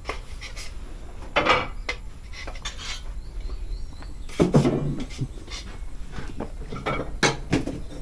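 A few light clinks and knocks, three short clusters spread a few seconds apart over a low steady background.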